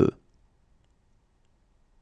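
The end of a spoken French number, "soixante-deux", cut off a moment in, then near silence with a faint low hiss.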